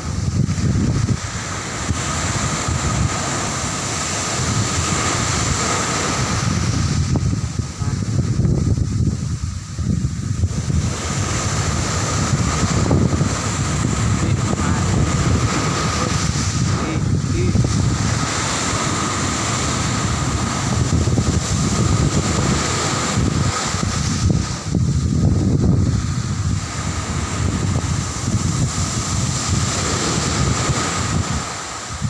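Small surf breaking and washing up a sandy beach, a steady rushing that swells and eases every few seconds as each wave comes in, with wind buffeting the microphone.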